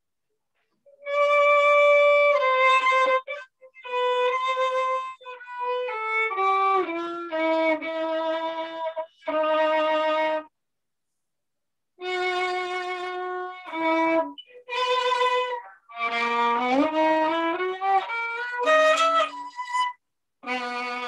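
Solo violin playing a melody in bowed phrases, held notes stepping and sliding between pitches, heard over a video call. The sound cuts out completely for about a second at the start and again for about a second and a half near the middle, between phrases.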